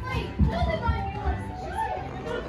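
Background chatter of people and children in a busy indoor public space, with music playing in the background and a few low thuds.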